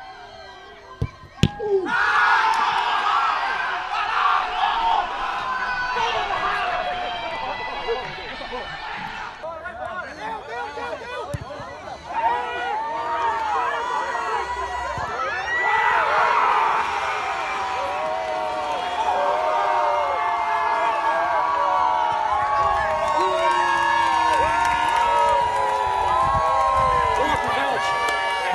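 Two sharp knocks about a second in, then a group of football players shouting and cheering in celebration, many voices overlapping loudly.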